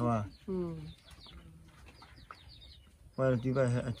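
Two people talking in low voices, with a pause of about two seconds in the middle where only faint background sound remains.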